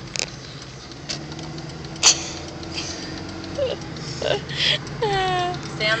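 Steady low hum of a car driving, heard from inside the cabin, with a sharp click about two seconds in. Near the end a person clears their throat.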